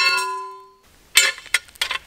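Steel star pickets clanging. The first clang rings out with a bell-like tone that dies away and is cut off suddenly within the first second, followed by a few short clanks.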